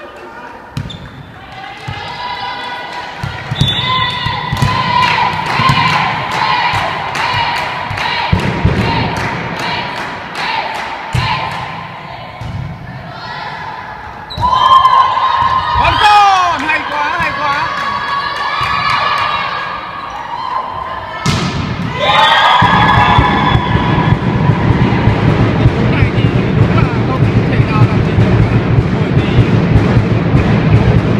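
Volleyball being played in a sports hall: sharp thuds of the ball struck and hitting the court, with players' voices calling and shouting, echoing in the large hall. It grows louder about halfway through, and louder still and denser near the end.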